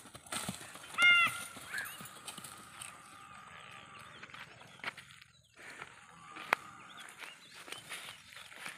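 Holstein Friesian cow trotting and then walking over dry, stubbly field ground: scattered light hoof knocks and rustling. A short high-pitched call about a second in is the loudest sound.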